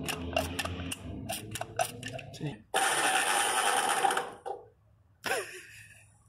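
Starter motor of a flathead V8 spinning for about a second and a half without the engine catching, then stopping: the battery is flat. Before it, clicks of hands at the carburettor and low voices.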